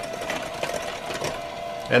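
KitchenAid electric hand mixer running steadily at low speed, its beaters whisking creamed butter, sugar and egg in a glass bowl: an even motor whir with a faint steady hum.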